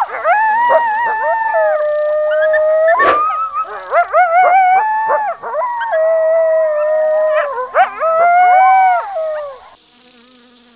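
Cartoon werewolf howling and whining: a long run of held, wavering calls that step and slide up and down in pitch, broken by a few sharp clicks. It stops just before the end.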